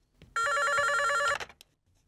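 Electronic desk telephone ringing: one warbling, trilling ring about a second long.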